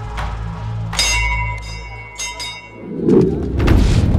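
Dramatic film score over a low sustained drone; a bell is struck once about a second in and rings for over a second as it fades, then the music surges into a loud, low hit near the end.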